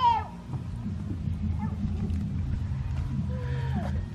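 A cat meowing twice: a short, falling meow at the start and a fainter, longer falling meow near the end, over a steady low rumble.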